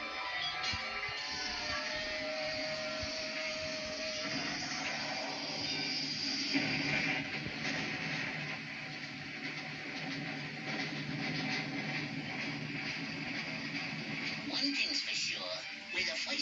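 Cartoon soundtrack playing through a television's speakers: orchestral music with cartoon sound effects. A falling tone glides down and holds in the first few seconds, and a noisy crash comes about six to seven seconds in.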